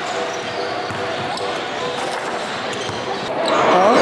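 Basketball gym ambience: voices chattering in a large hall with basketballs bouncing on the hardwood and scattered clicks. It grows louder near the end.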